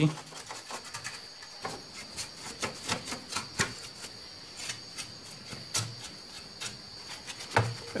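A steady high-pitched trill of crickets in the background, with scattered small clicks and taps.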